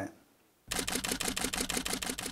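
Camera shutter sound effect: a fast burst of evenly spaced shutter clicks, like a motor-driven SLR firing continuously, starting under a second in.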